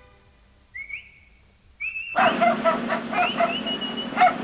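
A man whistles two short rising calls to his dog. About halfway through, a burst of dog barking and yapping comes in, with more rising whistle calls over it.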